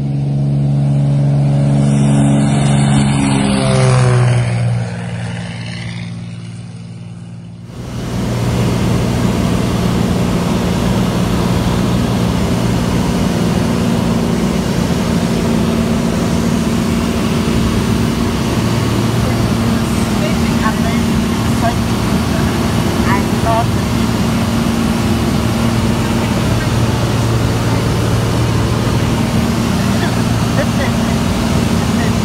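A single-engine propeller plane on its takeoff run, its engine loudest about four seconds in, then falling in pitch and fading as it goes by. About eight seconds in this gives way to the steady engine and propeller noise heard inside the cabin of a small high-wing plane in flight.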